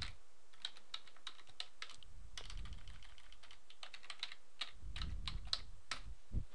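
Typing on a computer keyboard: irregular, fairly faint keystrokes as a line of code is finished.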